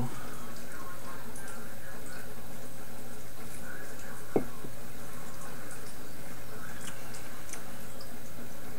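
Steady room noise with a constant hiss and faint hum, broken by one short click about four seconds in.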